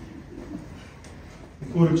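Quiet room tone in a hall with faint scattered sounds, then a man starts speaking into a microphone near the end.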